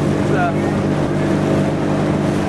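Engine of a small motorboat running at steady speed, a constant droning hum.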